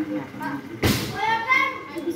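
Background chatter with a high-pitched child's voice, and one sharp knock or thump a little under a second in.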